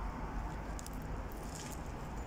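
Faint chewing of a mouthful of burger with a crispy battered onion ring in it, a few soft crunches over steady background noise.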